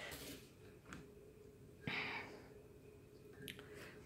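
Quiet room with faint handling sounds: a few light clicks and taps as beadwork and leather are moved about on a glass tabletop, and one short soft noise about two seconds in.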